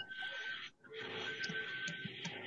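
Faint background hiss with a thin, steady high tone, picked up through an open microphone on a video call. It drops out briefly a little before the middle.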